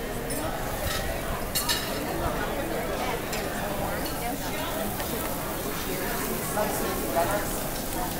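Chatter of many people talking at once over a steady hiss, with a sharp clink of dishes about a second and a half in and lighter clinks later.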